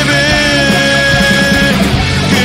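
Rock band playing, with guitar, bass and drums, and a long held note that ends shortly before the close.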